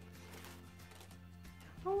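Faint background music with low held notes. A woman's voice starts at the very end.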